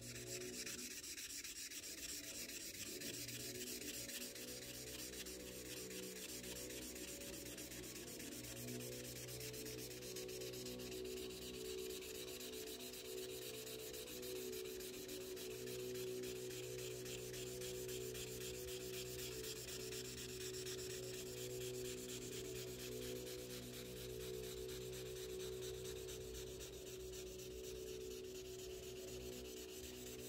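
An Imagine Ink mess-free marker scribbling back and forth on a colouring-book page: continuous quick rubbing strokes of the felt tip on paper. A steady low hum runs underneath.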